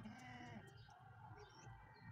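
A goat bleats once, briefly and faintly, right at the start.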